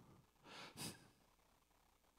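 Near silence, broken about half a second in by one short breath drawn by the preacher close to the microphone.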